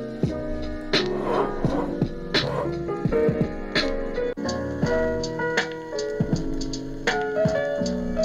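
Music with keyboard and a drum beat played through a Cork Bluetooth speaker seated in the neck of a bottle, the bottle working as a resonating chamber that boosts the bass. The music breaks off sharply about four seconds in and carries straight on.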